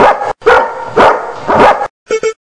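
A Doberman barking: the end of one bark, then three loud barks about half a second apart.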